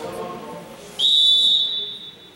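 Referee's whistle blown once, one loud held blast of about a second starting about a second in, the signal that authorises the serve. Indistinct voices of the crowd and players come before it.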